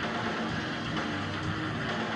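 Live rock band playing an instrumental passage without vocals: loud distorted electric guitar and bass holding low notes, with drums.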